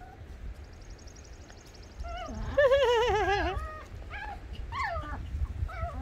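Puppies giving high, wavering yelping cries while they chase: one long cry about two seconds in, then a few shorter ones.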